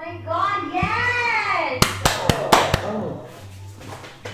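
An excited voice exclaiming, then about five quick hand claps in under a second, about two seconds in.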